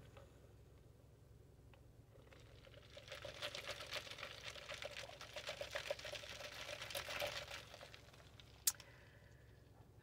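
Close-up sounds of a clear plastic latte cup and its straw as the drink is sipped and the cup handled: a dense run of fine crackles and ticks for about five seconds, starting about three seconds in, with a single sharp click near the end.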